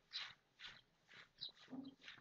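Faint background animal sounds: a string of short breathy bursts, about two a second, with a brief lower call near the end.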